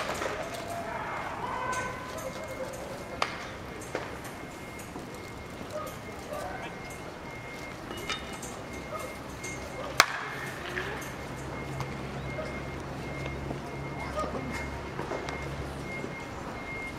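Baseball bat meeting pitched balls during bunting practice: a few sharp knocks spaced seconds apart, the sharpest about ten seconds in, over faint chatter. A low engine hum starts about ten seconds in.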